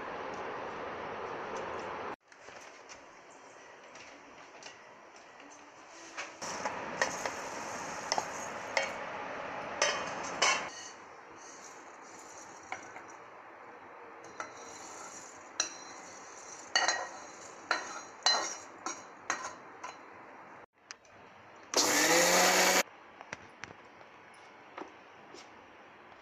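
An electric mixer grinder runs in one short burst of about a second near the end, dry-grinding roasted spices. Before it, steel utensils and a pan clink and scrape off and on.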